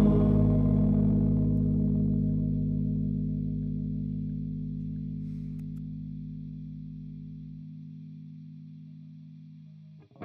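The song's final chord on electric guitar with chorus and distortion effects, left to ring out and fading away slowly. The lowest note drops out about three-quarters of the way through, leaving a faint hum at the end.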